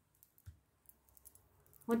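A few faint, light clicks as hands pick up and handle a tarot card deck on a cloth-covered table.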